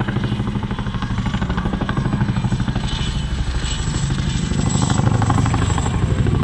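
Boeing CH-47 Chinook tandem-rotor transport helicopter flying past, its fast, even rotor chop growing steadily louder as it comes nearly overhead.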